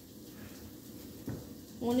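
Quiet handling sounds of bread being dipped and turned in a plastic bowl of beaten egg, with one light knock a little past halfway. A voice starts right at the end.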